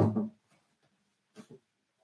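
Near silence in a small room after a last spoken syllable, broken by two faint, brief knocks about a second and a half in.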